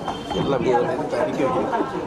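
Several people talking at once, overlapping indistinct chatter.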